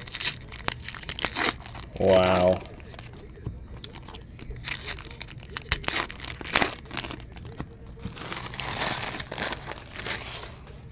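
Foil trading-card pack wrappers crinkling and tearing as packs are opened and handled, in bursts of crackle with sharp snaps. About two seconds in comes a short low voiced sound, like a brief hum, the loudest moment.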